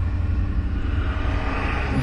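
Steady low rumble with an even hiss above it and no distinct events: continuous background noise, like an engine or wind, between sentences of talk.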